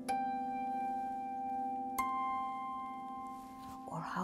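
Concert kantele: two single notes plucked with the fingertips about two seconds apart, each ringing on long and clear, the second higher. Played softly to picture what the stars are like.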